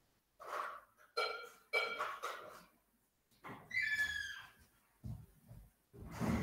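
Short high-pitched whining cries from a domestic animal, four in all, the last one sliding down in pitch.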